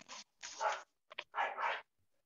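An animal calling in about four short bursts, two close pairs, carried over a video call.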